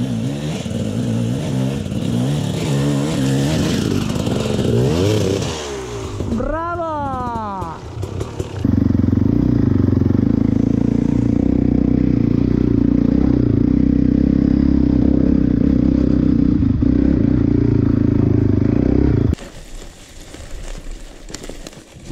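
Dirt bike engine revving up and down, its pitch rising and falling as the bike rides over rough ground. About eight seconds in, a louder, steady engine note takes over and holds for around ten seconds, then drops away near the end.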